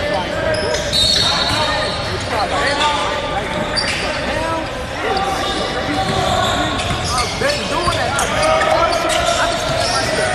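Basketball game sounds in a large gym: a basketball bouncing on the hardwood court amid the overlapping chatter and calls of players and spectators, echoing in the hall.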